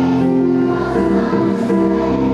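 A large group of children singing together in unison, holding long notes and moving to a new note about a second in.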